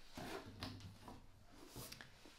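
Faint rustling and a few light knocks of paperback books being shifted about while reaching into a box of books.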